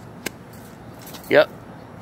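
A single sharp click about a quarter of a second in, over a steady low background hum, followed by a man's short spoken 'yep'.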